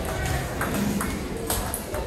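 Table tennis rally: a plastic ball clicking off paddles and the table, a few sharp clicks about half a second apart, with voices murmuring in a large hall.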